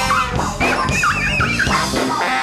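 Live band music with drums, guitar and a horn section, with a wavering high melodic line about halfway through.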